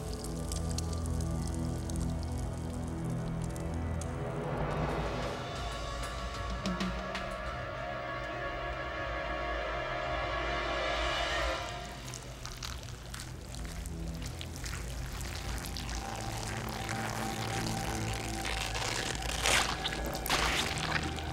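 Horror film score: sustained, droning tones that swell and then drop away about twelve seconds in, followed by a quieter, scratchy texture.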